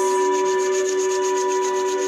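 Palms being rubbed briskly together in quick, even back-and-forth strokes, over a steady held tone of background music.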